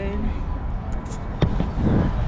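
Handling noise from an action camera being picked up and repositioned, with a single sharp knock about a second and a half in. Under it runs a steady low rumble.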